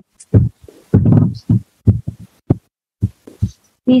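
A man laughing in a string of short, low chuckles, irregularly spaced.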